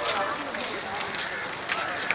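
A walking crowd of people talking over one another, several voices at once, with footsteps on the road.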